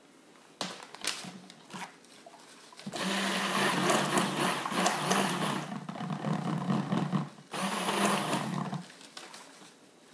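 Stick blender running in a small cup of soap batter, mixing in titanium dioxide: one burst of about four seconds, a brief stop, then a second burst of just over a second. A few light knocks come before it starts.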